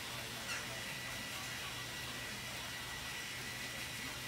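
Steady low background hiss with a faint constant high tone and a low hum: room and microphone noise, with no distinct event.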